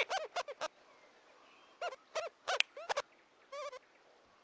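Cartoon rodent voices chattering: clusters of short, high squeaky chirps, a pause about a second in, then a short warbling call near the end.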